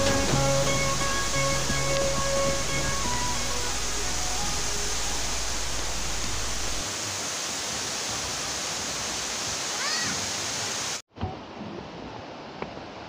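Steady rushing of a rocky waterfall and river. Background music of plucked notes plays over it for the first few seconds and fades away. Near the end the sound cuts off abruptly and quieter ambient sound follows.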